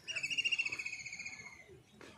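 A bird's rapid, high-pitched trill that slides slightly down in pitch, lasting about a second and a half.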